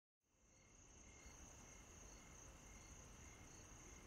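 Faint crickets chirring in one steady high note, with a fainter short chirp repeating about every half second, fading in from silence in the first half second.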